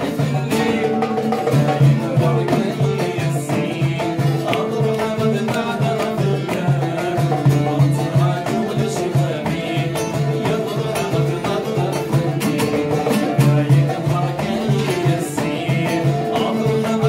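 A man singing a Kabyle folk song to his own Algerian mandole, plucked melody lines under the voice, with a frame drum beating a steady rhythm.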